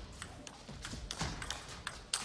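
Table tennis ball clicking sharply off the rackets and the table in a fast rally, a quick irregular run of hits, one every fraction of a second.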